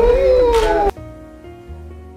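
A person's high-pitched, drawn-out emotional cry that bends up and down in pitch and cuts off abruptly about a second in. Quieter, gentle instrumental music with held notes follows.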